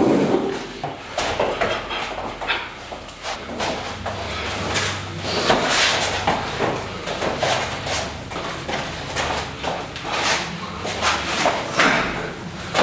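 Two fighters grappling in a clinch and takedown drill: irregular scuffs of feet on a mat and knocks of bodies, over a low steady hum.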